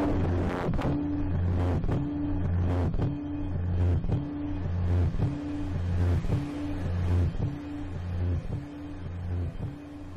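Experimental music for an amplified Apple ImageWriter dot-matrix printer and synthesizers: a low droning pulse repeats about once a second, each with a short higher tone, over scattered clicks and noise. It grows somewhat quieter near the end.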